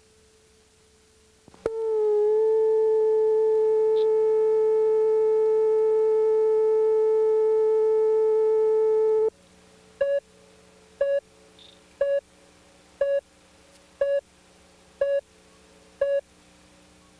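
Videotape line-up tone: a steady reference tone that comes in about one and a half seconds in with the colour bars and cuts off suddenly about nine seconds in. Then countdown-leader beeps follow, one short beep a second.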